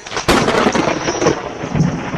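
A sudden loud crash about a quarter of a second in, then a dense crackling rumble: a thunder-like impact in the intro of a gospel song track.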